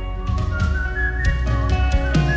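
A slow whistled melody with sliding, wavering notes over a worship band's soft instrumental music of sustained keyboard and guitar.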